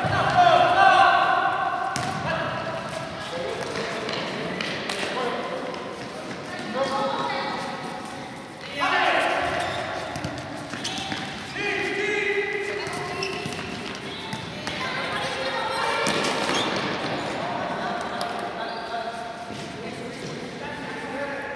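Raised voices of players and onlookers calling out during an indoor futsal match, with occasional sharp thuds of the ball being kicked and bouncing on the hard court.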